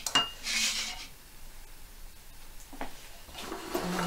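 Kitchen bowls and dishes clinking and scraping as they are handled and moved on the worktop: a clink right at the start, a short scrape about half a second in, and a light knock near three seconds.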